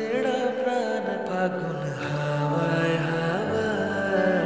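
Background music: a slow track of sustained, gently gliding melodic lines.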